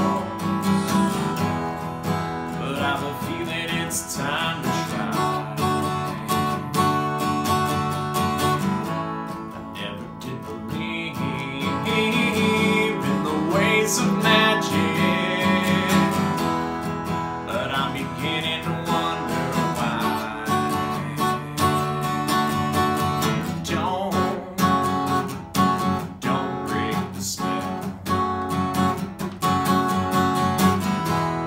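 Acoustic guitar strummed steadily, with a rack-held harmonica playing the melody over it in an instrumental break; the harmonica lines stand out near the start and again about halfway through.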